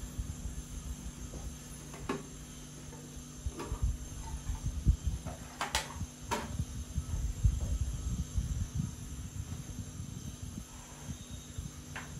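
A small wooden jewellery box and bangle boxes being handled: a few light, sharp clicks and knocks, the loudest about six seconds in, over a steady low hum and low rumble from a handheld camera.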